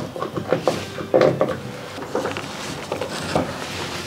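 A Bessey clamp being slid into the T-track of an aluminium guide rail and tightened onto plywood: a scatter of short clicks and knocks, metal and plastic on wood.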